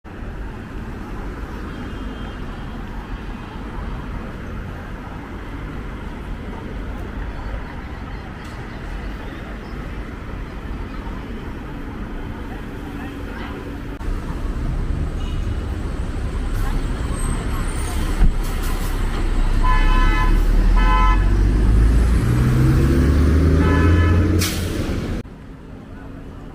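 Street traffic: steady road noise with a vehicle engine rising in pitch as it speeds up in the second half. Short car horn toots sound twice close together and once more near the end, before the sound cuts off abruptly.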